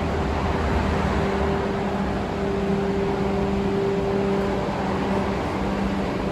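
Steady hum of building ventilation: an even hiss with a low held drone, unchanging throughout.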